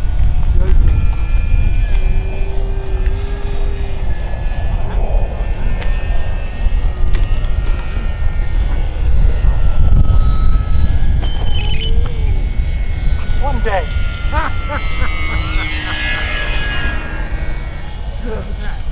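Wind buffeting the microphone, under the high whine of several radio-controlled model plane motors rising and falling in pitch as they fly. Voices call out briefly about two thirds of the way in.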